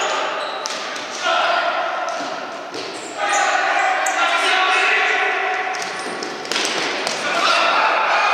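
Futsal match in an echoing sports hall: players calling out, with the ball struck sharply a few times and ringing off the hall.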